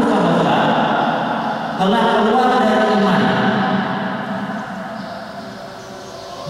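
A man's voice chanting a religious recitation in long, drawn-out melodic notes that echo in the hall. One phrase ends just after the start, a new one begins about two seconds in, and it trails off toward the end.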